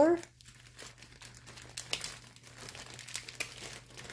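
Small clear plastic zip-top bags of sequins crinkling as they are handled and moved, a run of small irregular crackles.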